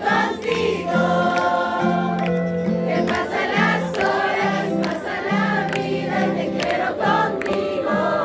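Live band music through outdoor stage loudspeakers: a slow Christian pop ballad with long held melody notes over a steady bass line.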